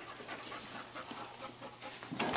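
A dog panting quietly.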